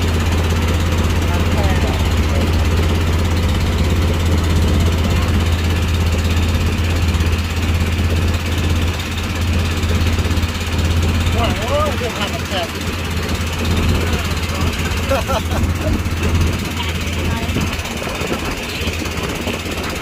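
A river boat's engine running steadily while under way, a constant low hum that does not change in pitch or level. Brief voices come in around the middle.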